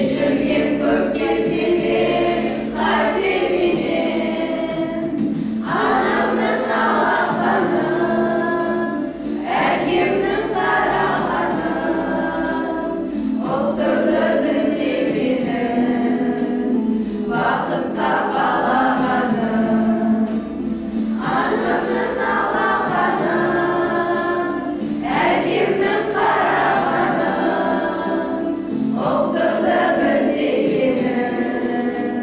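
A group of teenage boys and girls singing together as a choir, in sustained phrases that break for a breath about every four seconds.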